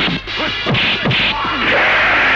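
Dubbed film-fight sound effects: a quick series of punch and kick whacks and crash hits, several strikes within two seconds.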